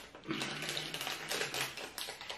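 Quick, irregular crinkling and crackling of a small packet being handled in the fingers, a dense patter of tiny clicks.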